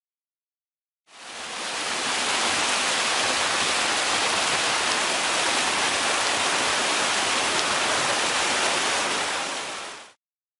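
Rushing whitewater in a river rapid: a steady hiss that fades in about a second in and holds evenly.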